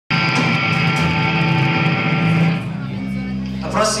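Amplified electric guitars ringing out on a held chord as a song ends. The chord drops in level about two and a half seconds in and lingers softly before a man starts speaking near the end.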